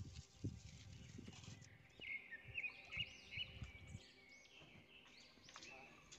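Faint outdoor ambience with small birds chirping, a quick series of short chirps starting about two seconds in, plus a few soft low thuds near the start.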